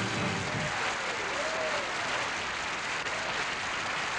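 Studio audience applauding at the close of a song number, with the last of the music fading out in the first second.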